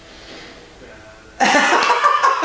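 A man laughing loudly, starting suddenly about a second and a half in after a quiet stretch.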